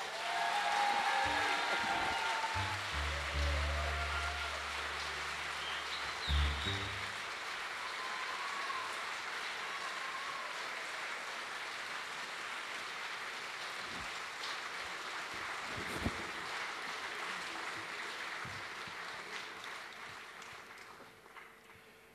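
Audience applauding after a banjo piece, steady at first and dying away over the last few seconds.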